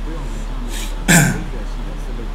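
A man clears his throat once, sharply and loudly, about a second in, just after a short intake of breath.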